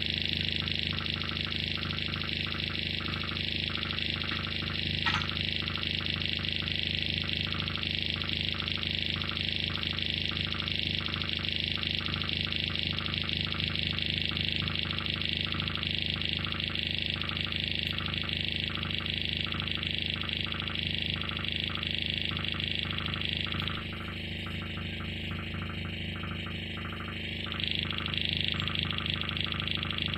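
Live experimental electronic noise from patch-cabled electronics: a dense, steady drone of held low tones under a bright hiss, chopped by a regular pulse. A short click about five seconds in, and the sound thins and drops in level for a few seconds near the end before coming back.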